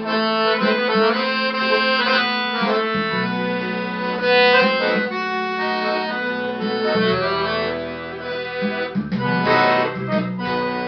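Piano accordion playing a melody on the keyboard over held bass chords, the bass notes changing about every few seconds.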